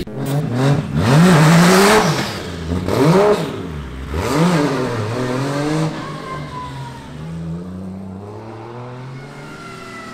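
Toyota 2JZ inline-six engine in a BMW E46 M3 drift car, revved hard in about three rising-and-falling blips over the first five seconds. The engine then runs on more quietly as the car drives off.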